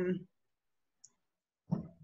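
Speech breaks off into dead silence, with one faint short click about a second in. Speech resumes near the end.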